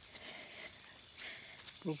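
A steady, high-pitched chorus of insects in forest, with a short spoken word coming in near the end.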